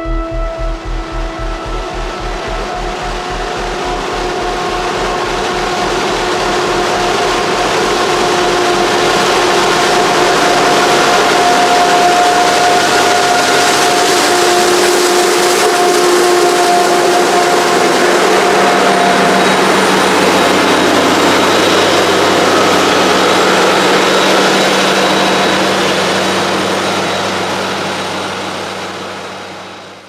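Claas Jaguar forage harvester running at work chopping maize: a loud, steady mechanical noise with a few held tones. It builds over the first few seconds and fades out near the end.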